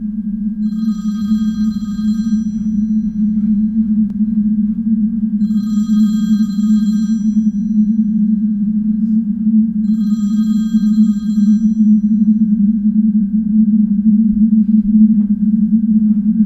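A telephone ringing three times, each ring lasting about a second and a half and about four and a half seconds apart, over a loud steady low drone that slowly grows louder.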